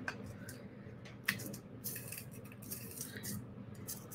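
Faint small clicks and light handling noise of beading wire and small metal findings being handled on a work table, the clearest tick about a second and a quarter in.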